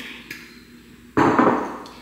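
A glass bottle of kombucha set down on a stone kitchen countertop: one sharp knock about a second in, fading over half a second, after a couple of faint clicks as the cap is twisted on.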